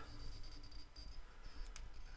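Quiet small-room tone: a low hum and faint hiss, with one brief soft click near the end.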